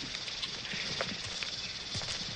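Film-soundtrack jungle ambience: a steady, high insect drone with a few scattered soft clicks and taps.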